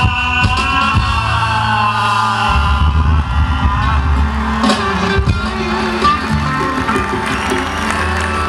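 Male vocalist holding a long sung note with a classical flavour, its pitch bending, over harmonium accompaniment and a steady low drone. About halfway through, the audience breaks into cheers and whoops while the instruments carry on.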